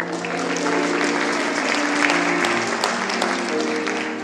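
Audience applause, a dense patter of many hands clapping, over a treble choir holding sustained chords. The clapping thins out near the end while the singing carries on.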